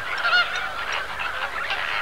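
A flamingo breeding colony calling: many birds honking at once in a steady, overlapping din, with one clearer call standing out about half a second in.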